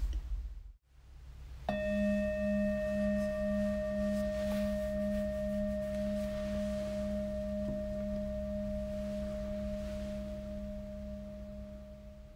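A singing bowl struck once, a little under two seconds in, ringing with a wavering, pulsing low note under a clear higher tone and fading slowly over about ten seconds, above a faint steady low hum.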